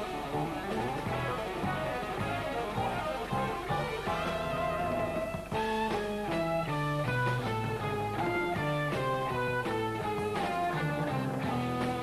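Jazz-rock band playing an instrumental live, with electric guitar and bass guitar over drums. About halfway in it turns into a fast line of clearly separated notes over a moving bass line.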